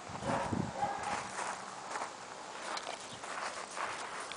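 Footsteps of a dog and a person walking on loose gravel, an uneven run of short crunches.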